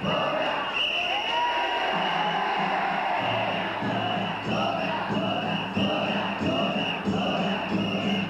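Danjiri festival procession: a large crowd of pullers calling out together over the danjiri's festival music of drums and bells, heard on an old VHS recording.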